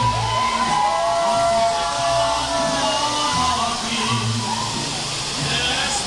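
Mariachi music with long held, slightly bending notes, mixed with people's voices.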